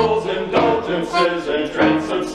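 A small men's vocal group singing the refrain of a comic polka in harmony, over a bouncing piano accompaniment that keeps a steady beat.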